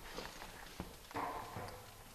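A few faint, scattered knocks and clicks from a heavy steel bunker door being handled and moved by hand.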